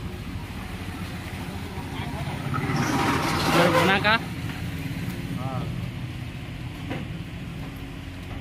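An engine running steadily, a low hum under the whole stretch, with brief shouts of men's voices around three to four seconds in and a short call near the middle.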